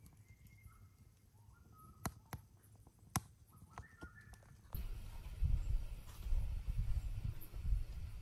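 Faint, short whistled bird calls and a few sharp clicks over quiet bush ambience; a little under five seconds in, a sudden loud, uneven low rumbling noise takes over.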